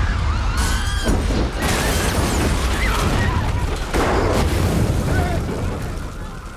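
A large pyrotechnic car-bomb explosion: a heavy, continuous low rumble with sharp cracking bursts about a second and a half in and again about four seconds in, with people shouting over it.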